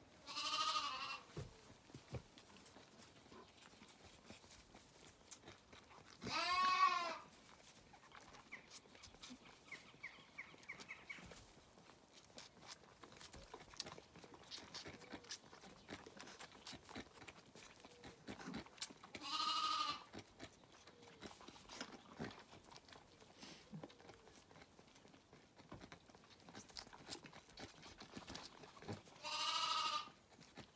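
Zwartbles lambs bleating four times, each call about a second long and spaced several seconds apart. Between the calls come faint clicks and smacks, likely lambs sucking on feeding-bottle teats.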